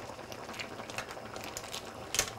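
Cioppino broth simmering faintly in an enameled cast-iron pot, with a few light clicks of crab shell pieces being set on the seafood.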